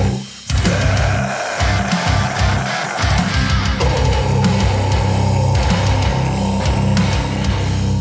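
Pop-punk band recording with electric guitars, bass and drums, no vocals. The band drops out briefly about half a second in, then a guitar holds long notes, changing once near the middle.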